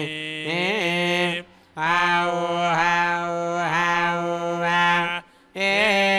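Sanskrit mantra chanting in long, held, gliding notes, breaking off twice for breath.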